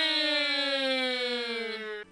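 A woman's long, drawn-out 'oooh' of dismay: one held note with a slow downward slide in pitch, fading toward the end.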